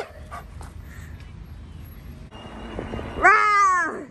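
Alaskan Malamute crying on its lead: a short rising whine at the start, then a louder howl-like 'woo' near the end that rises and falls in pitch.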